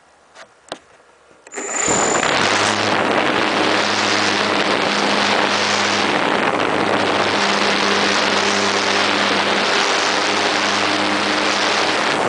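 Electric motor and propeller of a GWS Slow Stick RC park flyer starting up suddenly about a second and a half in, after two faint clicks, with a brief high whine as it spins up. It then runs at a steady pitch through takeoff and climb, under loud rushing air noise on the onboard camera microphone.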